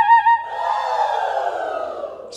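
Comedy sound effect: a fast-warbling tone that breaks off about half a second in, then a long falling glide that sinks steadily in pitch.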